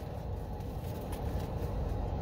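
Steady low rumble of background noise inside a car cabin, with a few faint clicks.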